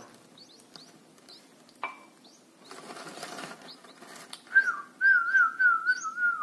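Red-whiskered bulbul chicks in the nest giving faint, short, high begging cheeps, with a click about two seconds in. From about four and a half seconds a loud warbling whistle, held around one pitch, joins them, with quicker cheeps over it: a person whistling to get the chicks to gape for food.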